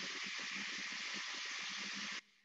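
A steady hiss of noise coming through the video-call audio, cutting off suddenly just after the end.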